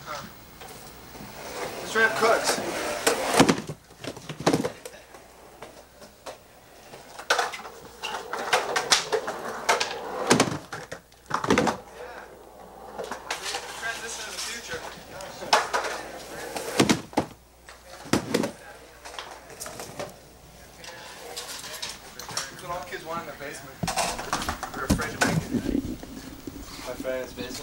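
Indistinct voices talking on and off, with several sharp knocks and bangs scattered through.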